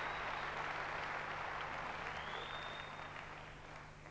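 Concert audience applauding at the end of a song, the clapping dying away toward the end.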